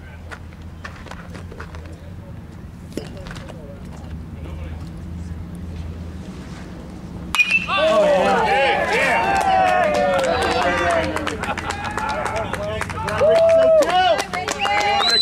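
Bat hitting a pitched baseball about halfway through, a single sharp crack, followed at once by spectators and players shouting and cheering a base hit.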